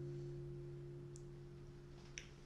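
Acoustic guitar's final chord ringing out and slowly fading away at the end of a song.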